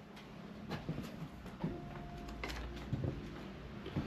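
Quiet room tone in an empty building, with a few faint scattered knocks and clicks.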